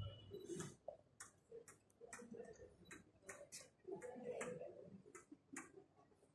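Near silence with a scattering of faint, irregular clicks over a faint low murmur.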